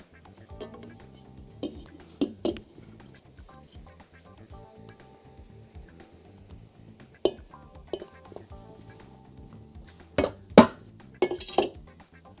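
Stainless-steel mixing bowl clanking and a silicone spatula scraping and tapping against it as dough is scraped out onto the counter: scattered sharp knocks, a few in the first seconds and the loudest cluster near the end. Soft background music runs underneath.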